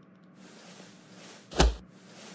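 A single short hit sound effect, a sharp smack with a low thud, about one and a half seconds in: a cartoon punch as a boy is struck on the arm.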